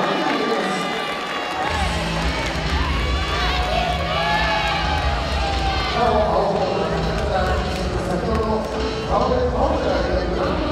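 Voices calling out in an arena, with music over the PA system; a steady low bass comes in about two seconds in.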